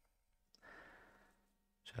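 Near silence, with a faint breath or sigh about half a second in; a spoken word begins at the very end.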